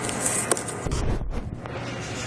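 Handling noise from a handheld camera being moved: a sharp click about half a second in, then a low rumbling thump about a second in, over a steady low room hum.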